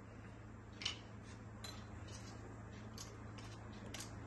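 Whole spices dropped by hand into a small stainless-steel cup, giving a few faint, light clicks against the metal, the clearest about a second in.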